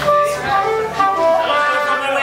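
Irish céilí band starting to play, melody notes with a guitar, over people talking.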